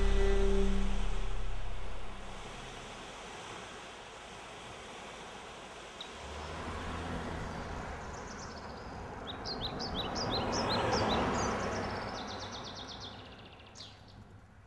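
Bowed-string music fades out in the first two seconds, leaving outdoor ambience. A vehicle swells past, loudest about eleven seconds in and then fading, while a small bird chirps in quick repeated notes.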